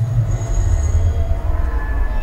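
Experimental glitch/illbient noise generated by a Pure Data patch, randomly selected samples run through reverb and delay: a loud low rumble, with a thin high tone that comes in shortly after the start and fades a little after a second.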